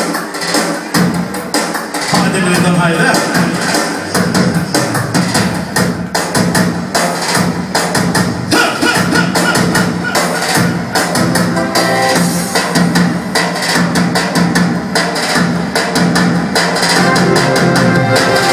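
Live Albanian folk-dance music played loud on a Korg keyboard, with a steady drum beat.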